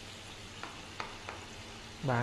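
Onion sizzling faintly in butter in a frying pan on a gas hob, a soft steady hiss, with three light clicks about half a second, one second and 1.3 seconds in.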